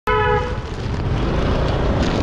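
A vehicle horn gives one short honk right at the start, then steady engine and traffic noise while riding a scooter through a busy street.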